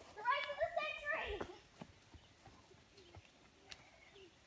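A young child's high-pitched voice calling out in the first second and a half, then faint footsteps crunching on a gravel trail.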